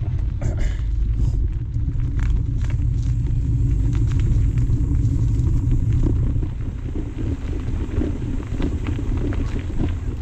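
Mountain bike riding along a dirt singletrack: a steady low rumble of tyre noise and wind on the microphone, with scattered small clicks and rattles from the bike, easing slightly after about six seconds.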